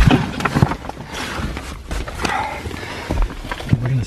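A sigh, then scattered knocks, bumps and rustling as someone shifts about in a cramped crawl space of wood framing and drywall, pressing against the wall and door.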